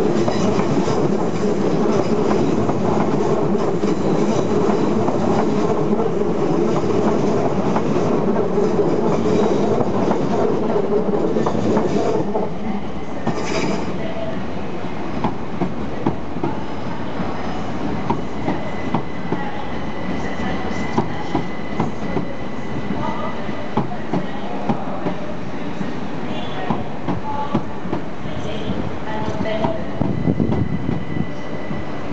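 First Capital Connect Class 319 electric train running past on the near track: a loud, steady rumble of wheels on rail for about the first twelve seconds. After that the sound drops to a quieter train moving along a platform line, its wheels clicking over rail joints about once a second, with a faint steady high whine.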